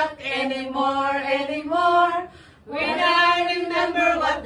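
Women's voices singing an action song together with no instruments, in long held notes, breaking off briefly a little past halfway.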